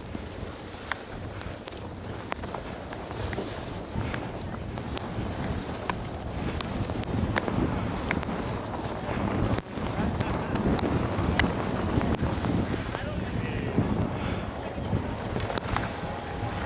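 Wind rushing over the microphone of a moving skier's camera, with the hiss and scrape of skis sliding on snow and scattered sharp clicks. It gets louder in the second half.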